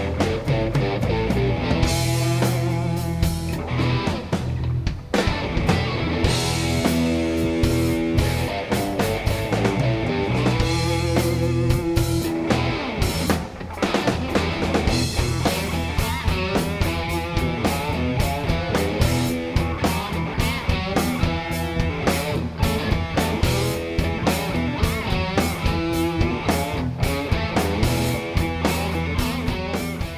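Rock band music with guitar and a drum kit playing steadily.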